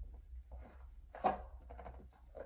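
Faint handling of stuck-together trading cards being pulled apart: a few soft small clicks and rustles over a steady low hum, with a man's short "oh" about a second in.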